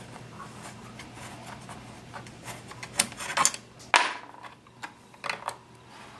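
Small wrench working a Chicago-style screw out of the plastic receiver shroud of a Hi-Point 995 carbine, loosening the shroud for removal. Faint rubbing and scraping at first, then a series of light metallic clicks and knocks. The loudest is a short ringing clink about four seconds in.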